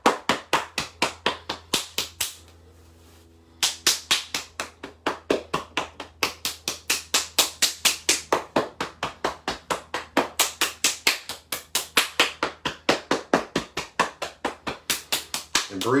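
Rapid open-hand slaps on a person's own forearm and shoulder, about four a second, in a qigong arm-slapping exercise. The slapping breaks off briefly about two seconds in, then carries on at the same pace.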